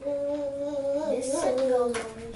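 A child's voice holding a sung or hummed note, steady for about a second, then wavering up and down and settling slightly lower.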